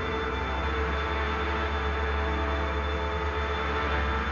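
Background music made of sustained held tones over a steady low drone.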